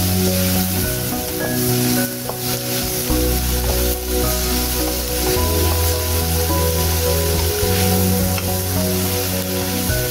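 Chopped onions, curry leaves and dried red chillies sizzling in hot oil in a non-stick wok, stirred with a wooden spatula. Background music with steady sustained notes plays over it.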